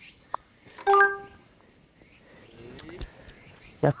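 A putter tapping a golf ball in from close to the hole: a light click about a third of a second in, then a short, loud steady tone about a second in. A faint steady high insect hum sits underneath.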